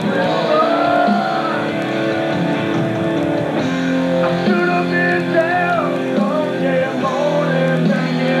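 Karaoke backing track of a rock song with electric guitar, played loud, with a man singing along live into a microphone.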